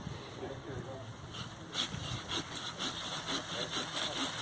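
Curved hand pruning saw cutting through a thin branch of a young tree. Quick, even strokes, about five a second, start about a second and a half in.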